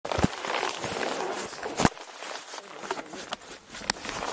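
Rustling and handling noise close to the microphone, from gloved hands and clothing moving on the camera pole, with three sharp knocks: about a quarter second in, just before two seconds in, and near the end.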